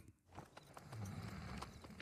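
Faint clip-clop of a horse's hooves.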